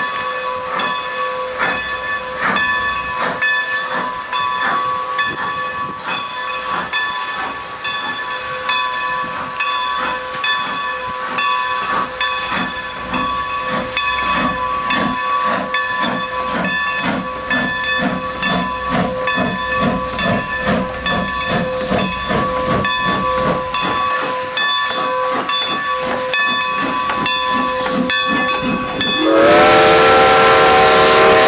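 Great Western No. 90, a 2-10-0 steam locomotive, working a train with a regular exhaust chuff over a continuous hiss and steady tone of escaping steam. About a second before the end, a steam whistle starts, its pitch rising as it sounds.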